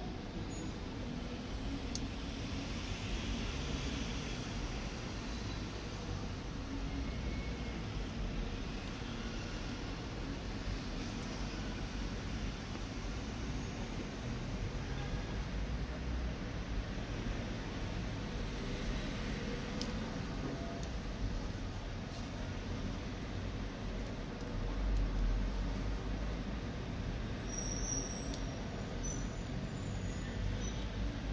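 Steady background noise with a low rumble, swelling briefly about 25 seconds in, with a few faint ticks; the hook work itself is not heard.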